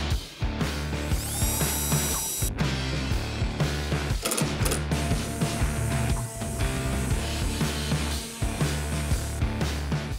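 A cordless drill driving screws into a plywood cabinet, its motor whining up to speed about a second in, then a small electric palm sander buffing a plywood ramp, over background music.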